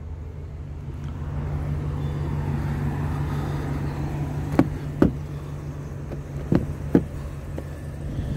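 2021 GMC Yukon XL idling after a remote start, a steady low hum, with four short sharp knocks in the second half.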